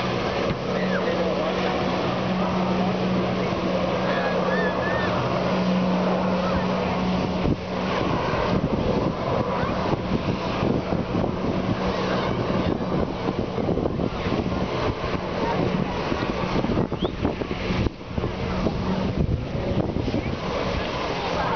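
Sea-Doo personal watercraft engine running with a steady drone while its jet feeds the fire hose of a water-jet flyboard, heard across the water over beach crowd chatter. From about eight seconds in, wind buffets the microphone.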